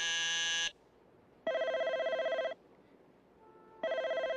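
Telephone ringing electronically: two rings about a second long each, a little over two seconds apart. A different pitched electronic tone ends just before the first ring.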